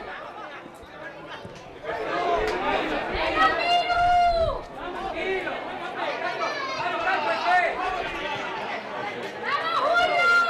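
Several voices shouting and calling out over one another on the sideline of a youth football match, with a loud drawn-out shout about four seconds in and another near the end.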